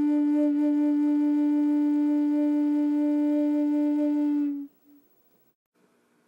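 Native American flute holding one long, steady low note that stops abruptly about four and a half seconds in.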